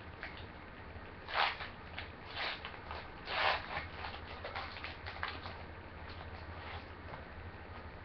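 Foil wrapper of a trading-card pack being torn open and crinkled: three short bursts of tearing and crinkling about a second apart, then softer rustling as the cards are slid out.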